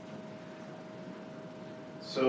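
Quiet room tone in a lecture hall: a steady low hiss, with a faint thin steady tone that stops shortly after the start.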